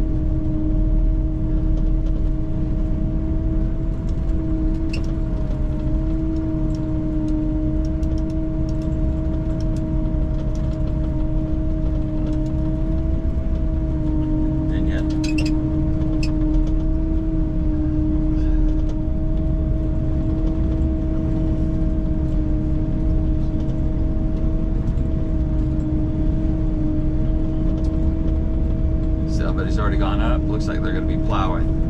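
Snow groomer (snowcat) heard from inside its cab as it drives along a snowy trail: the engine and tracks run steadily with a constant whine over a low rumble. It is only travelling, not grooming.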